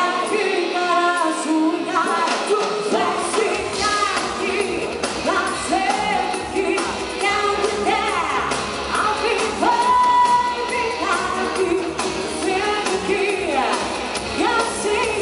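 A live pop band playing, with a woman singing lead, recorded from among the audience in a large hall. The bass and beat come in about three seconds in.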